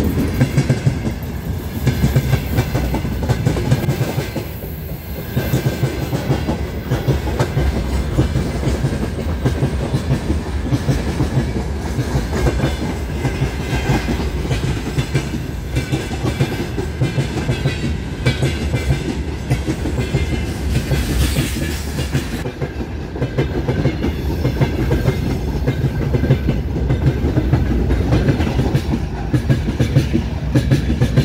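Freight train wagons rolling past close by: a steady, loud rumble of steel wheels with a continuous clickety-clack of wheels over the rail joints.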